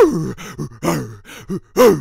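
A man's voice making wordless, strained yells and groans in a Grinch impression: about four loud bursts with rising-and-falling pitch, the first and last the loudest.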